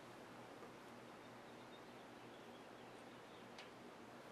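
Near silence: room tone, with one faint click about three and a half seconds in.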